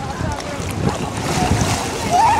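Lake water splashing and sloshing around people wading, the hiss of spray building in the second half, with wind buffeting the microphone.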